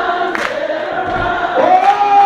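Church choir and congregation singing held notes of a gospel song together, with two sharp hits about a second and a half apart.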